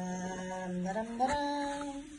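A woman's voice humming a long drawn-out note, which steps up to a higher pitch about a second in and holds there.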